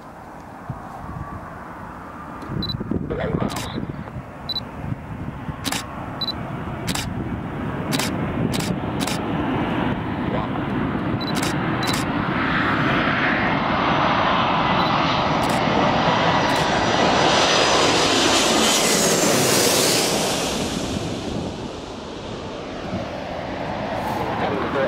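Airbus A330 Voyager airliner on final approach with landing gear down, its Rolls-Royce Trent 700 turbofans growing steadily louder as it nears and passes overhead. A high whine sits on top at the loudest point near the end, then the sound eases off.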